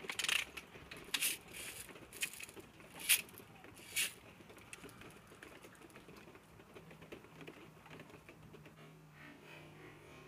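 Handling noise: about five sharp clicks and taps roughly a second apart in the first four seconds, then a low, quiet background.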